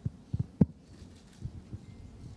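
A series of irregular dull, low thumps, the loudest a little over half a second in, over quiet room noise.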